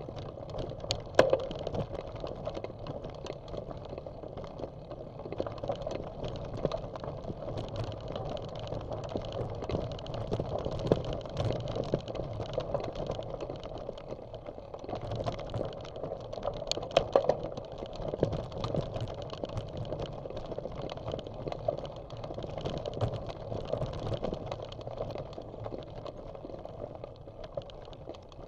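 Bicycle rolling over a dirt and gravel trail, tyre crunch and steady rattling of the bike and mount picked up by a bike-mounted camera. Sharper knocks from bumps come about a second in and again about two-thirds of the way through.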